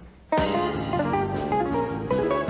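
Live band music: after a brief drop in level, a fast run of plucked banjo notes comes in about a third of a second in and carries on over the band.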